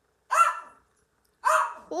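A dog barking twice, two short barks about a second apart.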